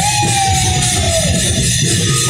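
Loud procession music with dense, continuous drumming. Over the drums a high melodic line holds one long note that slowly sags in pitch.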